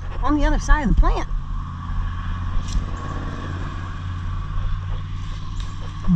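A person's voice for about the first second, then a steady low motor hum.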